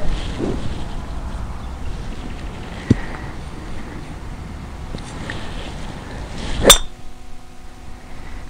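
A golf driver striking a ball once, near the end: a single sharp crack with a brief metallic ring, over a steady low background rumble.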